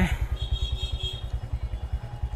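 Royal Enfield Hunter 350's single-cylinder engine idling with a steady, even beat.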